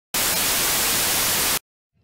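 Television static: a loud, even hiss of white noise lasting about a second and a half, cutting off suddenly.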